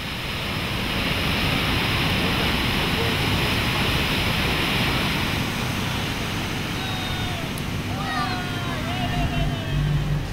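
The Murchison Falls cataract on the Victoria Nile, where the river is forced through a narrow rock gap, gives a steady, dense rush of falling water that eases slightly after the first few seconds. A few faint gliding whistled calls come in near the end.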